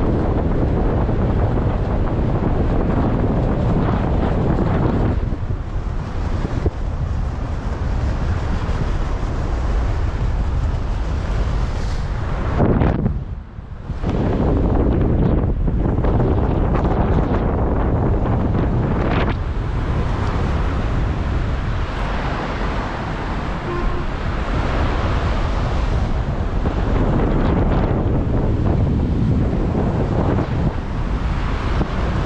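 Wind noise from airflow over an action camera's microphone in paraglider flight: a steady, loud rumbling rush that drops away briefly about 13 seconds in.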